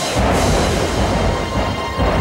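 Dramatic soundtrack music with a deep rumble of thunder that breaks in suddenly at the start and rolls on underneath.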